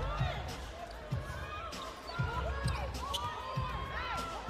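Basketball dribbled on a hardwood court, a low thud about every half second, with sneakers squeaking and players calling out.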